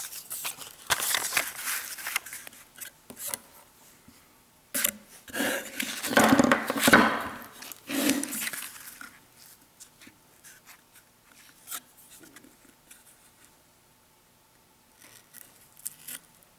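Handling noises at a workbench: double-sided foam tape strips and a wooden ruler being handled and a wooden block shifted on the table. It comes as bursts of rustling and scraping, loudest about five to eight seconds in, then mostly quiet with a few small ticks.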